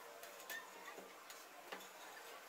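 Faint clicks and taps of a thin tile's edge knocking against a glass sheet as it is set upright and shifted, the clearest two about a second apart.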